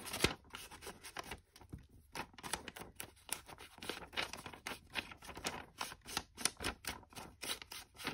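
An ink blending tool rubbed and dabbed along the edges of a sheet of embossed paper, making rapid, irregular scratchy strokes, with the paper rustling as it is handled.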